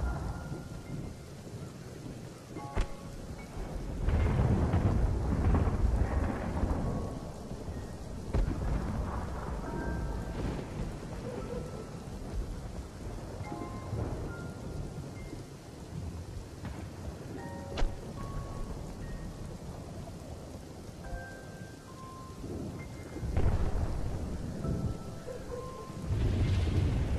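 Ambient soundtrack of deep rolling rumbles over a steady rain-like hiss, with sparse short high notes. The rumbles swell about four seconds in and again near the end, and a sharp crack comes just past halfway.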